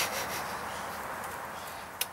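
A steady rustling, hissing noise that fades out gradually, ending in a short sharp click.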